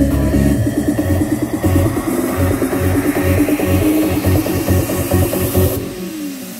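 Electronic dance music played loud through a pair of Cerwin-Vega XLS-215 tower speakers with twin 15-inch woofers: a pulsing deep bass beat, with a rising sweep building in the treble over the last few seconds.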